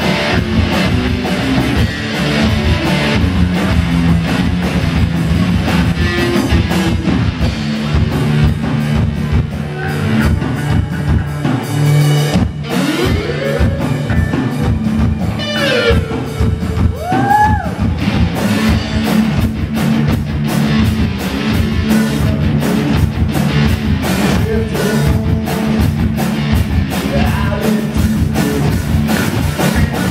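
Live rock band playing loudly: electric guitar through a Marshall amp, bass guitar and a Tama drum kit, with steady drumming, a brief break near the middle and a few sliding notes after it.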